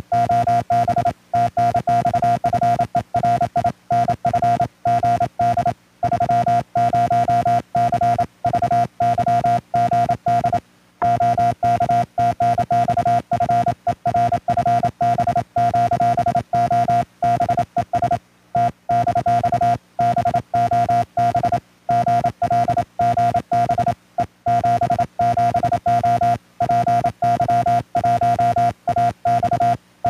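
Morse code (CW) tone from an amateur radio transceiver: a single steady pitch keyed on and off in dots and dashes by a hand-operated key.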